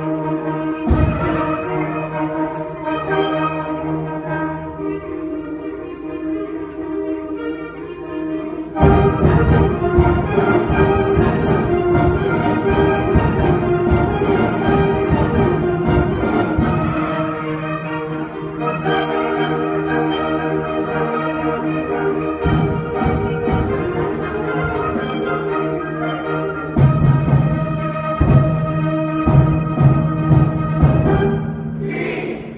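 High school concert band (wind ensemble) playing: sustained chords, then the full band comes in loudly about nine seconds in, with low drum strikes near the end.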